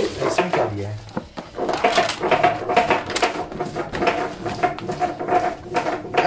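Plastic bag and paper wrapping being handled and crinkled as a package is unwrapped, with a dense run of sharp crackles from about two seconds in.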